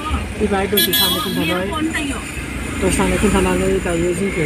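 A man talking inside a moving passenger van over the steady low rumble of the engine and road, with a short toot of a horn a little under a second in.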